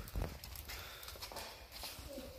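Footsteps on a paved path: a few irregular knocks, the loudest a thud just after the start, over faint background noise.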